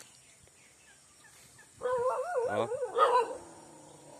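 A dog whining in a high, wavering pitch for about a second and a half, starting nearly two seconds in.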